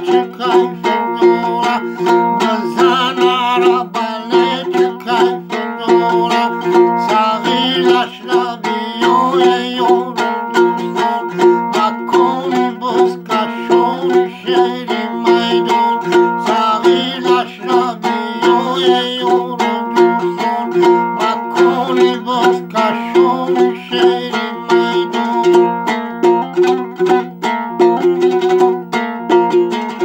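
A long-necked fretted lute with a round body is plucked in a quick, even rhythm over a repeated low note. A man's voice sings along at times.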